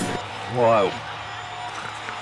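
Music stops right at the start, then a voice makes one short sound about half a second in, rising and falling in pitch, over a faint steady hum.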